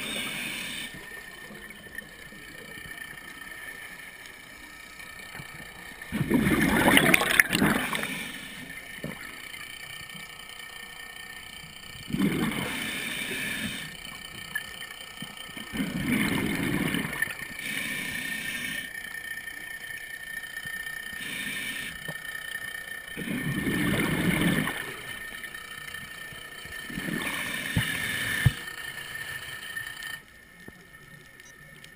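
Scuba regulator exhaust bubbles: five rushing, gurgling bursts of exhaled air, each lasting a second or two and coming every four to five seconds with the diver's breathing, heard underwater through the camera's housing over a faint steady hiss.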